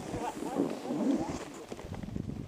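Skis sliding and scraping over packed snow during a downhill run: a steady rough hiss broken by fast, irregular ticks.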